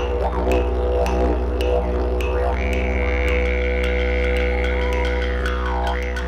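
Didgeridoo played with a continuous low drone, its tone shaped by the mouth into rising and falling sweeps. About halfway through a high overtone is held for a few seconds and then falls away. Light regular ticks run over the drone.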